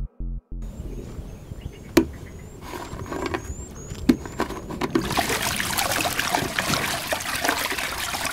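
Water poured over a person's head, splashing steadily from about five seconds in. Before it, a pulsing music beat stops in the first half second, leaving quiet with two sharp knocks and faint repeated high chirps.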